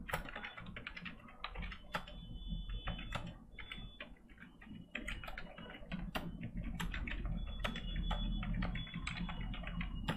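Computer keyboard being typed on in quick, irregular runs of keystrokes, with a brief lull about four seconds in.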